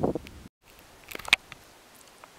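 A man's voice trailing off, then a brief dead-silent gap where the audio is cut, followed by faint outdoor background noise with a few short clicks a little after the cut.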